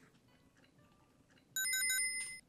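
Near silence, then about a second and a half in a bright electronic chime sound effect: a quick run of high pings followed by a held ringing tone.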